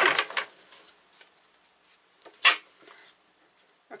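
A deck of oracle cards being shuffled by hand. There is a rustle of sliding cards at the start that fades out, then faint card clicks, with one short, louder burst of card noise about two and a half seconds in.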